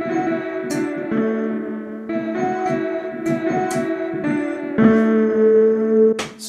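Electric keyboard playing a slow melody of held notes, the next note starting abruptly about one, two and five seconds in, with a few short sharp clicks. The line is the song's D major pentatonic verse melody, which lands on A.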